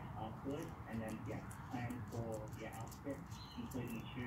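Faint background voices talking, with soft, sticky clicks and squelches from gloved hands pressing grease into a tapered roller bearing.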